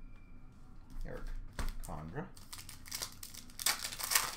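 Wrapper of a pack of hockey cards crinkling and tearing as it is ripped open, the crackle starting about halfway through and loudest near the end.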